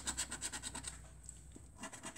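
A flat metal bar scraping the coating off a scratchcard in quick back-and-forth strokes, about ten a second. The strokes ease off briefly in the middle and then pick up again near the end.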